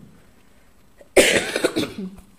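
A person coughing: a short fit of a few quick coughs beginning a little over a second in.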